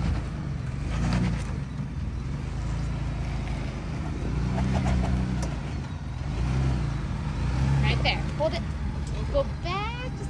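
Ford Bronco engine pulling at low speed as the truck crawls up a rock ledge, a low rumble that swells several times as the throttle is fed in. A few short, rising high-pitched sounds come near the end.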